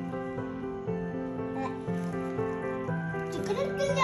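Background music of sustained notes that change pitch in steps every half second or so, with a short voice sound near the end.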